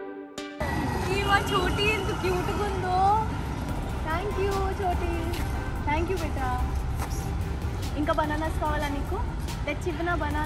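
Voices calling out and exclaiming, with no clear words, over a steady low rumble, with music underneath. The voices start about half a second in, after a brief pause.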